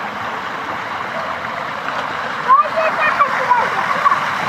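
Water rushing steadily through a shallow concrete channel, with splashing as a child wades barefoot through it. A voice is heard briefly about two and a half seconds in.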